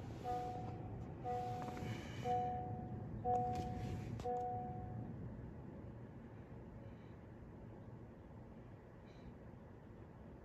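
A car's electronic two-tone warning chime, beeping about once a second six times and stopping about five seconds in, after the push-start ignition of a 2019 Honda Accord is switched on during smart-key programming.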